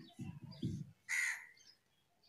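A crow caws once, a single harsh call about a second in.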